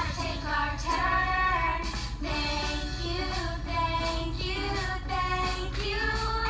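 A child singing a melody over a backing music track.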